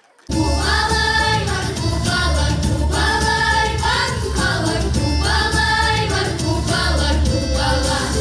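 A children's vocal ensemble of girls singing together into microphones over amplified accompaniment with a heavy, steady bass. It starts suddenly just after the start.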